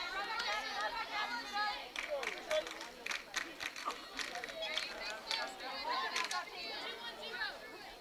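Distant voices of players and spectators at a softball field, chattering and calling out, with a few short sharp clicks or claps among them.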